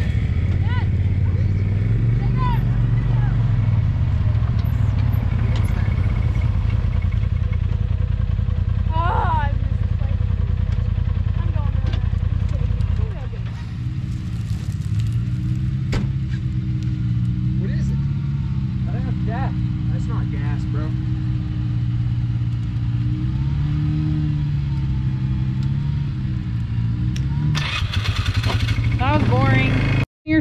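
Jeep Wrangler engine running, rising and falling in revs as it crawls up and out of a rutted washout, over faint voices. A loud rushing noise comes near the end.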